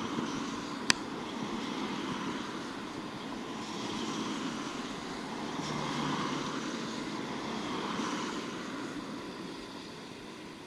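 Cars passing close by on a wet road, their tyre noise swelling and fading as each goes by, with a low engine note under one of them about six seconds in. A single sharp click sounds about a second in.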